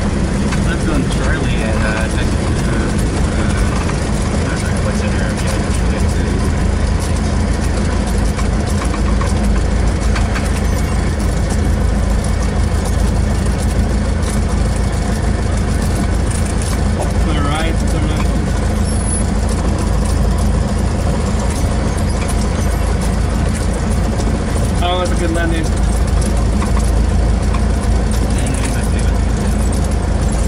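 Cessna 172's piston engine and propeller at low power, a steady drone heard inside the cabin while the plane slows and taxis off the runway. Faint voices come through briefly a few times.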